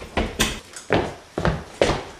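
Five short, sharp knocks, roughly half a second apart.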